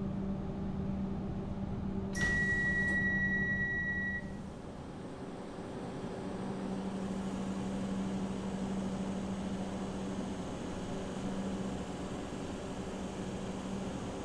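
Steady low hum of a stationary Comeng electric suburban train. About two seconds in, a single high electronic beep sounds and holds for about two seconds.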